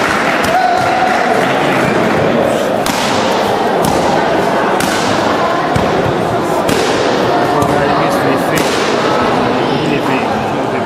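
Taekwondo kicks striking handheld kicking paddles: several sharp slaps a couple of seconds apart, each with a short echo, over steady chatter from people in the hall.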